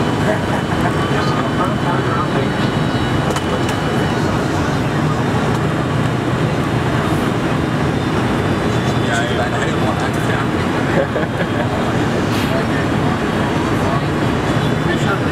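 Steady cabin noise inside a Boeing 747-400 airliner descending on approach: a continuous low rumble of engines and rushing air.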